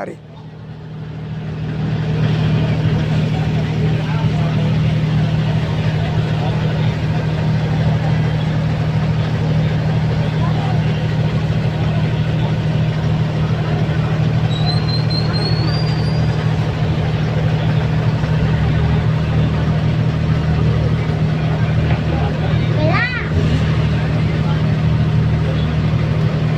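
A large diesel engine idling close by in stopped traffic: a loud, steady low drone that builds up over the first couple of seconds and then holds. A brief high rising whistle comes about halfway through, and a short voice sounds near the end.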